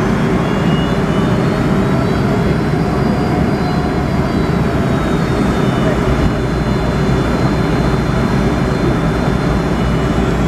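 Steady cabin noise of a Boeing 757 taxiing, heard from a window seat beside the wing: its Rolls-Royce RB211 turbofans running at low taxi thrust, a deep rumble with a faint high whine above it.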